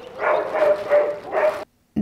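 A dog calling about three times in a row, each call held briefly at one pitch, then cut off abruptly.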